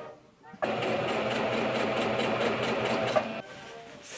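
Electronic domestic sewing machine stitching fabric: it starts abruptly about half a second in, runs at a steady rapid stitch rhythm for nearly three seconds, then stops.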